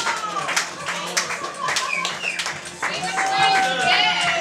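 Scattered hand claps from a party crowd, with voices whooping and calling out.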